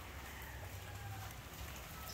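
Faint, steady hiss of light rain.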